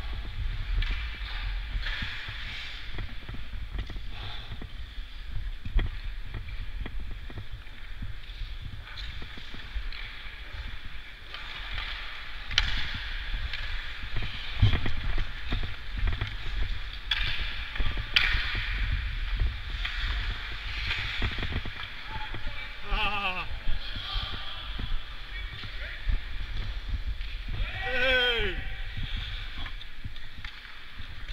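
Ice hockey skates scraping and gliding on rink ice, under a steady low rumble on a helmet-mounted microphone, with scattered sharp knocks of sticks and puck. Twice near the end a call sliding down in pitch rings out across the rink.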